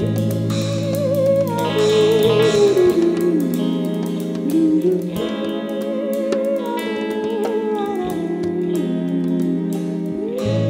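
A live jazz-soul band playing an instrumental passage: a lead melody with vibrato over sustained chords, a bass line and a steady beat of drums and hand percussion.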